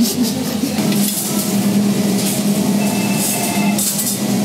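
Busy café background noise: a steady hum of room and diners with scattered clinks of dishes and cutlery.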